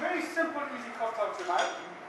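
Glassware and metal bar tools clinking a few times, with indistinct voices in the room.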